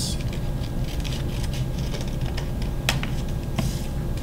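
Folded cut paper being handled and opened out over a cutting mat: light scratchy rustles and a couple of sharp clicks, about three seconds in and again shortly after, over a steady low hum.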